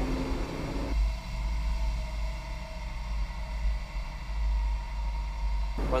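Large tractor on dual wheels running steadily under load as it drives over a silage pile to pack chopped alfalfa, a low rumble heard from the cab.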